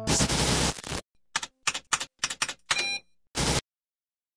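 A dense burst of hiss-like noise about a second long, then a string of short, choppy noise bursts that stop suddenly a little past three and a half seconds in: a glitchy sound effect.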